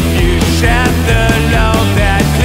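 Heavy blues-rock from a three-piece band: electric guitar, bass and drums playing at full volume, with regular drum hits and a wavering, vibrato-laden lead line above.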